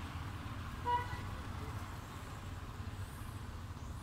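A single short vehicle horn toot about a second in, over a steady low rumble of distant traffic.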